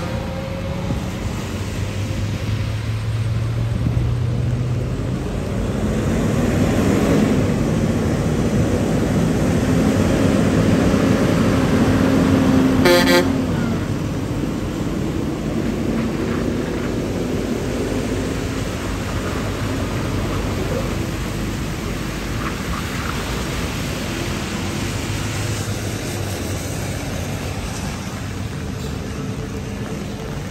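Traffic passing on a wet road, including a tractor-trailer going by close: tyre hiss and spray with engine sounds that rise and fall. A short horn toot sounds about 13 seconds in.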